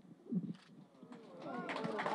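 An elderly man's brief choked sob as he breaks down in tears, followed by several audience voices calling out in overlapping, rising and falling tones that grow louder toward the end as the crowd begins to react.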